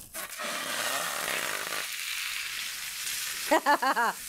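A whole raw chicken set into a stainless skillet of hot, shimmering vegetable oil, sizzling as soon as it touches the pan; the sizzle thins to a steadier, higher hiss after about two seconds. A short laugh near the end.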